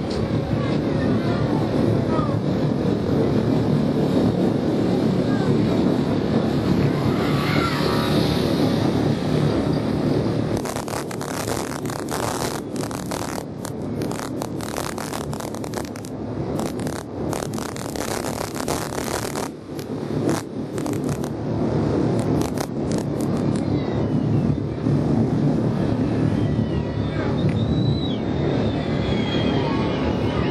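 Steady engine and road noise from a camera vehicle travelling with a road-race peloton, with roadside spectators shouting. Through the middle stretch there is a dense run of sharp cracks.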